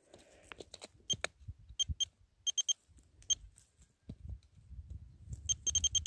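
Handheld metal-detecting pinpointer giving short high beeps as it is probed through loose soil hunting for a buried target. The beeps come singly and in quick runs of two or three, and they come thicker and faster near the end as it closes in. A low rustle of hands working the dirt runs underneath in the second half.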